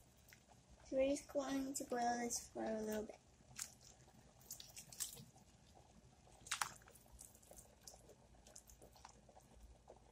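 A stainless steel pot of water at a gentle boil, parboiling beef bones and flank: faint bubbling with scattered small pops and one sharper pop about two-thirds of the way in.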